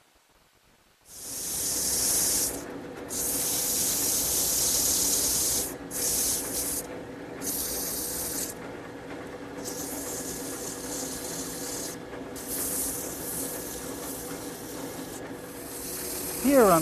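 Wood lathe turning a southern yellow pine table leg: a steady motor hum under loud hissing passes, each one to three seconds long with short breaks between them, as the cutter and then a sanding block work the spinning wood. The sound starts about a second in.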